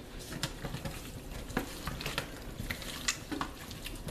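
Hands mixing and rubbing seasoned raw chicken pieces in a stainless-steel colander: wet squishing with irregular small clicks and taps as the meat shifts against the metal.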